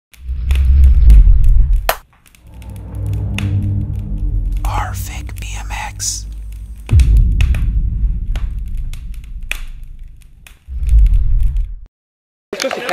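Electronic intro music: deep bass booms near the start, about seven seconds in and again near the end, with a held drone and sweeping, whispery effects between them. It cuts off suddenly just before the end.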